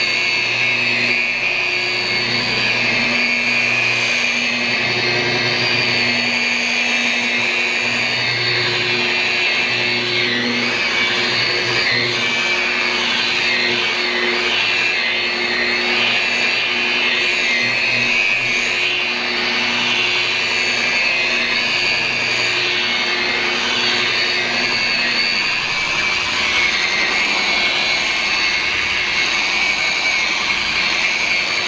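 DeWalt rotary polisher with a wool pad running steadily on car paint, its motor whine wavering in pitch at times as the pad is worked across the surface.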